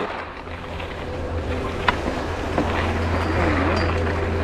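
Wind buffeting an action camera's microphone while skiing downhill: a steady low rumble that grows slightly stronger, over the hiss of skis sliding on snow.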